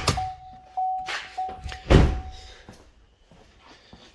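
Pickup truck's electronic warning chime dinging steadily, about one and a half times a second, and stopping about two and a half seconds in. A few heavy thuds come with it, the loudest about two seconds in.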